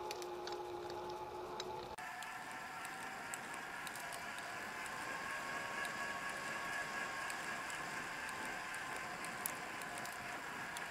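Mountain bike rolling along a paved trail: a steady hum of its tyres with scattered light ticks. About two seconds in, the whole hum jumps to roughly twice its pitch and stays there.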